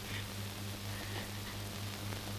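Steady hiss with a low, constant hum: the background noise of an old optical film soundtrack, with no distinct event.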